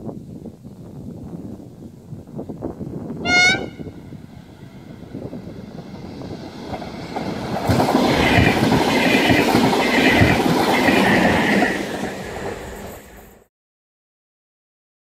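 PESA electric push-pull train of double-deck coaches: a short horn blast about three seconds in, then the train passes close by with wheels clattering over the rail joints and a high whine, loudest from about eight to twelve seconds, before the sound cuts off abruptly near the end.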